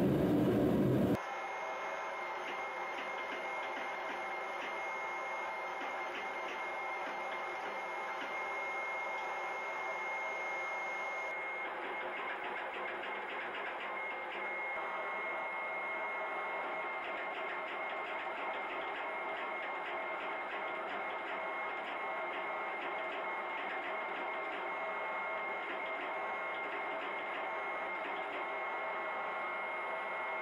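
A gas forge roars for about the first second, then a steady machine whine with a high tone and fine, rapid ticking crackle takes over: a hydraulic forging press running as the hot canister billet is pressed.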